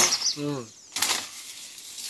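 Leaves and bamboo stems rustling and brushing as a person pushes through dense undergrowth, the rustling rising about halfway through.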